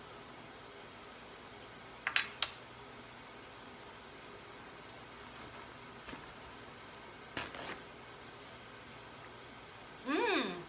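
A few sharp clinks of a metal fork against dishes: a quick cluster of three about two seconds in, then lighter ones around six and seven and a half seconds, over a faint steady room hum.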